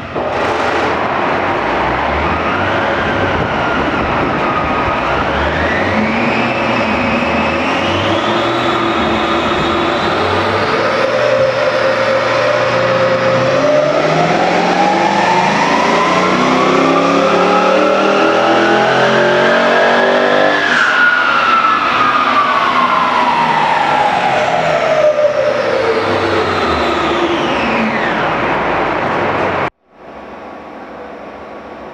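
Holden VF Commodore SS-V Redline's 6-litre V8, fitted with a mild cat-back exhaust, on a chassis dyno power run. The engine note climbs slowly through the revs for about twenty seconds, then falls away over the last several seconds as the car winds down on the rollers.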